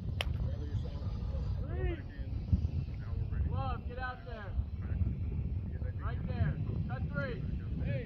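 Baseball players calling out across the field, with no clear words, over a steady low wind rumble on the microphone. A single sharp crack comes right at the start.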